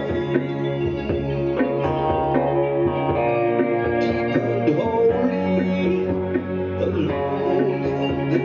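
Live song: a man singing into a handheld microphone over amplified band accompaniment with a steady bass line.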